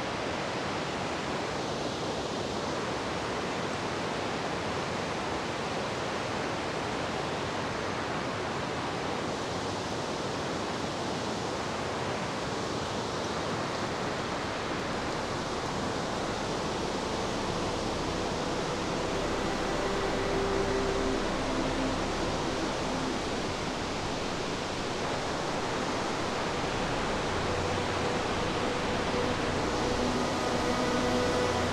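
Steady rushing of water from a nearby creek and falls.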